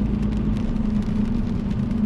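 Steady low rumble of road and engine noise inside a moving car's cabin, with a steady droning hum.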